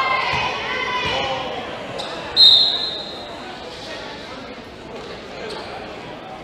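A volleyball referee's whistle: one short, shrill blast about two and a half seconds in, the loudest sound, signalling the serve. Around it, voices in the first second and a ball bouncing a few times on the hardwood gym floor, all echoing in the large hall.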